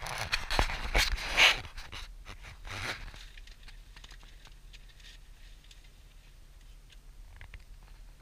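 Close rustling and scraping, with a few sharp clicks, over about the first three seconds. After that only a faint low steady hum remains inside the car.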